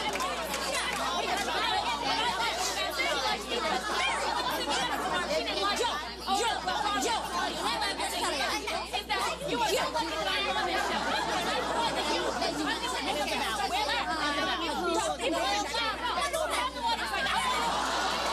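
Several women talking and exclaiming over one another at once, a jumble of overlapping voices with no single clear speaker.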